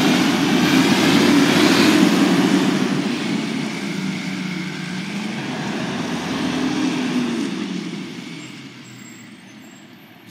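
Rear-loader garbage truck's engine running and revving up twice as it pulls away, fading steadily over the last few seconds as it moves off.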